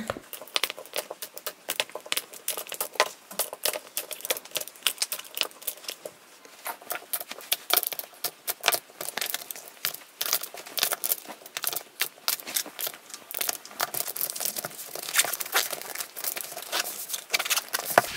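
Gel polish bottles being set one after another into a storage cube of a nail kit bag: many quick, irregular clicks and knocks as the bottles tap against each other and the cube.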